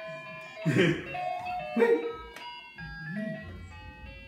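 Simple electronic tune of single beeping notes stepping up and down, played by the toy steering wheel of a baby's race-car activity walker. A voice calls out and laughs about two seconds in.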